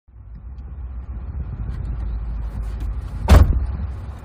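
Steady low rumble of a car idling, heard from inside the cabin, then the car's passenger door shutting with a loud thud a little over three seconds in.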